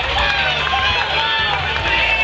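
Many voices talking over one another in a babble as the two teams' players shake hands, with music with a low, pulsing bass playing underneath.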